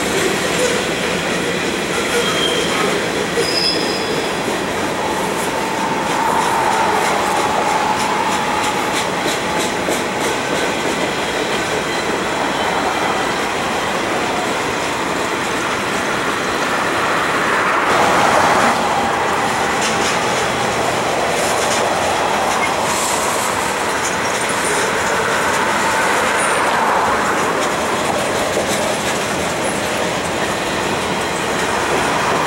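Freight cars, covered hoppers and boxcars, rolling steadily past on the rails, with a few short thin wheel squeals in the first several seconds.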